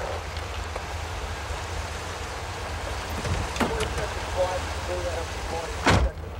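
Outdoor traffic ambience: a steady low rumble and hiss of city traffic, with faint distant voices in the second half and a sharp knock just before the end.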